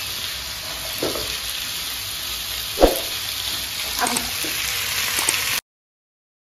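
Vegetables sizzling as they fry in a pan while being stirred with a spatula, with a few short knocks of the spatula against the pan, the loudest about three seconds in. The sound cuts off suddenly near the end.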